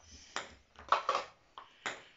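Ping-pong ball bouncing: three short, sharp clicks spaced about half a second to a second apart.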